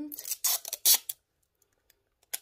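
A strip of tape being pulled off the roll in a few short, rasping rips, the loudest just under a second in.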